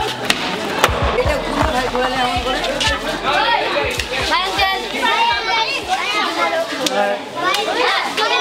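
A crowd of children chattering and shouting all at once, over background music with a steady beat that fades out about halfway through.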